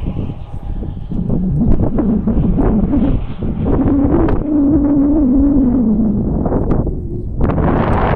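Wind buffeting the camera's microphone, a heavy uneven rumble. Through the middle seconds a low wavering tone rises and then falls away.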